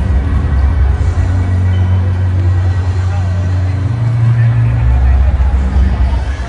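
Loud music with a deep bass line, the bass note shifting about four seconds in, over the chatter of a crowd.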